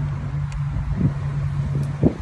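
A steady low machine hum with a rumble beneath it.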